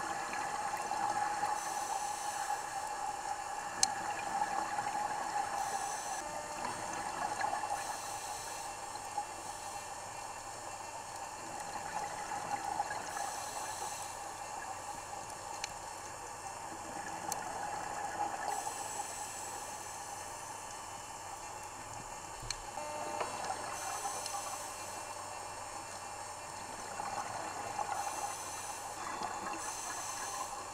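Underwater ambient noise picked up by the camera: a steady watery hiss that swells and fades every few seconds.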